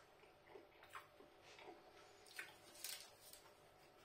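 Near silence, broken by a few faint, short clicks and wet mouth sounds from a man chewing a mouthful of pizza.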